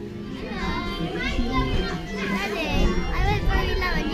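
Children's voices chattering and calling out over background music.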